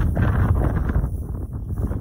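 Wind buffeting the microphone, a loud low rumble that thins out somewhat in the second half.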